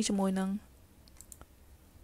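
A voice speaks for the first half second, followed by a few faint computer mouse clicks about a second in.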